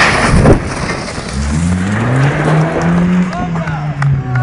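A brick wall collapses with a loud crash, its bricks and masonry hitting the paved ground. About a second and a half later the small hatchback that pulled it down revs, its engine rising in pitch and then holding steady.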